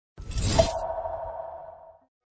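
Logo sting sound effect: a sudden whooshing, shattering hit a fraction of a second in, then a single ringing tone that fades away over about a second and a half.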